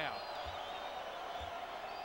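A basketball dribbled on a hardwood court at the free-throw line: two low thuds about a second apart, over a steady crowd murmur.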